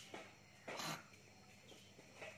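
Red junglefowl rooster foraging in dry leaf litter: one short rustle a little under a second in, with no crowing.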